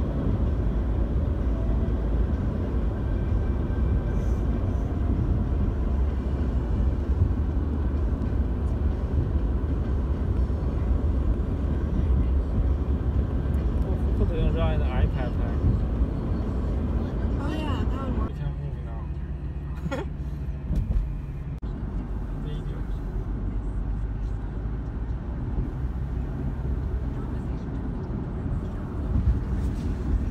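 Steady low road and engine rumble inside a car's cabin at highway speed. About eighteen seconds in it drops to a quieter, smoother hum.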